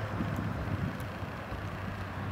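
Steady low rumble of distant traffic, with wind on the microphone.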